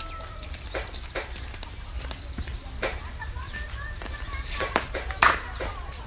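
Open-air cricket field ambience: faint distant calls of players, with a few sharp knocks or claps scattered through, the loudest a little after five seconds in, over a steady low rumble.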